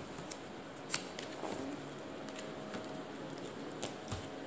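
Handling of a cardboard crayon box: light rustling with a few small sharp clicks, the loudest about a second in.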